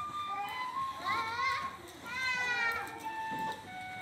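A child's voice in two short phrases that slide up and down in pitch, about a second in and again about two seconds in, with held musical notes sounding around them.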